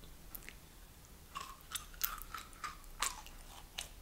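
Chewing and biting into a slice of raw aloe vera leaf: a quick run of crisp, wet crunches and clicks starting about a second and a half in.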